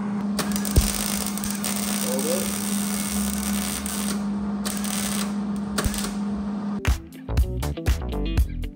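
MIG welder arc crackling as a bare-metal car body panel is welded: one long burst from about half a second to four seconds in, then two short tacks, over a steady hum. Music with a beat comes in near the end.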